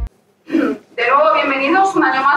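A woman speaking into a lectern microphone in a hall: a short vocal sound about half a second in, then continuous speech from about a second in.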